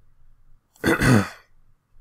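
A man coughs once, a single short harsh burst about a second in.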